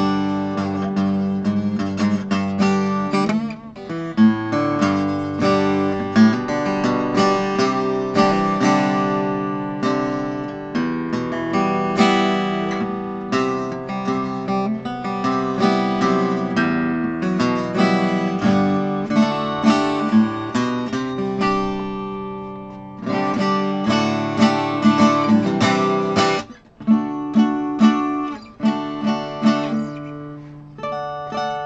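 Small-bodied acoustic travel guitar played unamplified with picked notes and strummed chords, moving up the neck, with a brief pause about four seconds in and short breaks near the end. It is a play-test after a tall fret that made a note fret out was fixed.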